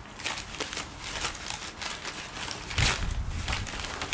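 Brown paper wrapping and plastic bubble wrap being pulled apart by hand: a run of rustling and crinkling made of many small crackles, with a louder burst of crinkling about three seconds in.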